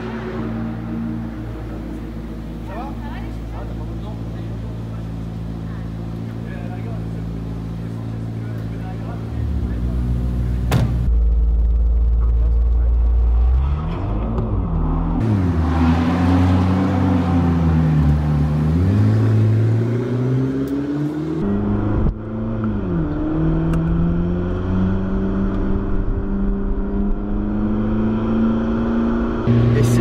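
McLaren P1's twin-turbo V8 idling steadily, then blipped through a series of short rises and falls in revs before settling back to a steady idle. The sound is louder from about a third of the way in.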